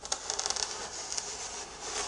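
Foil-covered cake board being turned by hand on a cutting mat, rubbing and scraping, with a quick run of fine scratchy ticks about half a second to a second in, then fading.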